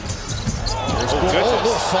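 Basketball dribbled on a hardwood court, several bounces over the steady background noise of an arena crowd.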